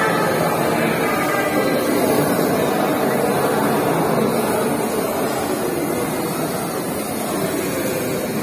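Steady whirring buzz of micro FPV racing drones, their small electric motors and propellers running as they fly the course.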